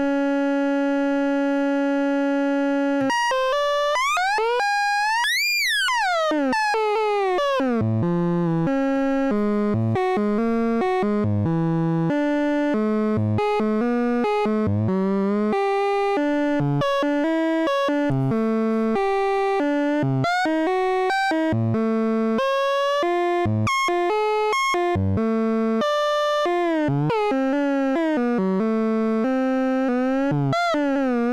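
Three Tom Modular Steve's MS-22, an MS-20-style Eurorack filter, resonating into self-oscillation with a little input gain mixed in. It is a buzzy synth tone with many overtones that holds one pitch, sweeps up and back down about five seconds in, then jumps through a run of quickly changing pitches with short breaks.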